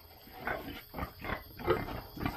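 Pregnant sows grunting: a run of about five short grunts over two seconds.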